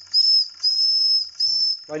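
The steam whistle on the boiler of a Wilesco D101 toy steam engine, a replacement for the original, is blown in three short blasts of one steady high-pitched tone. The middle blast is the longest.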